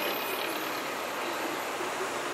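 Steady hiss of city street traffic heard from above, with no single vehicle standing out.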